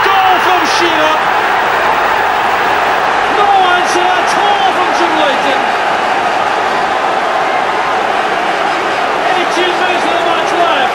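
Football stadium crowd cheering a goal: a loud, steady roar of many voices, with individual shouts rising above it.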